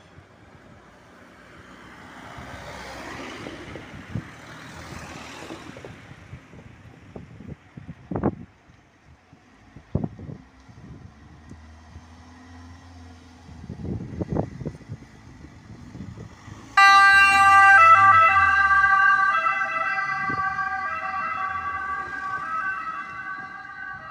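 Ambulance moving off, with low vehicle noise and a few sharp knocks at first. About 17 seconds in, its electronic siren switches on suddenly, loud, with stepping tones, and slowly grows fainter as it drives away.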